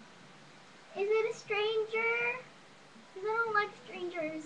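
A young girl's voice singing in a sing-song way without clear words, in short phrases of held notes: one phrase about a second in, running for over a second, and a shorter one near the end.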